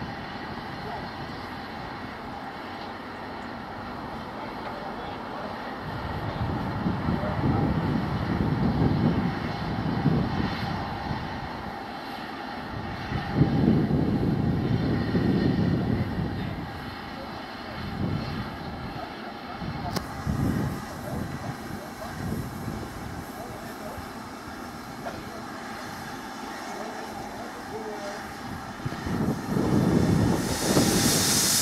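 LMS Royal Scot class steam locomotive standing at the platform, simmering: a steady rumble and hiss that swells louder several times.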